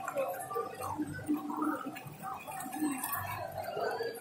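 Small fountain jets in a tiled pool bubbling and gurgling.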